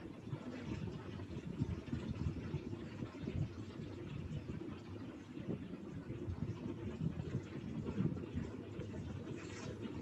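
Steady low rumble of background noise picked up over open video-call microphones, with no distinct event standing out.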